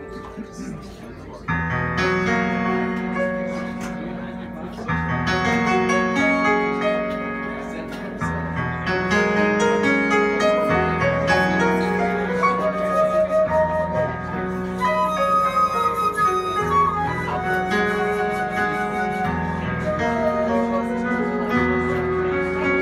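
Live small jazz band playing: flute lines over keyboard and electric bass, with drums. After a quieter first second and a half the full band comes in louder.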